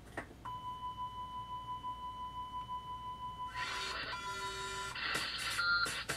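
Background broadcast audio: a steady, high electronic tone held for about four seconds, with music coming in partway through and getting louder near the end.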